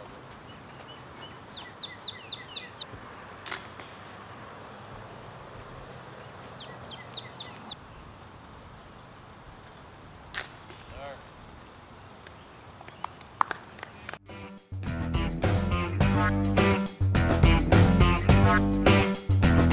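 Outdoor ambience with birds chirping, broken twice by a disc golf disc striking the metal chains of a basket: a sharp hit about three and a half seconds in, and another about ten seconds in with a jingling rattle of chains. Guitar music with a beat comes in loudly about fifteen seconds in.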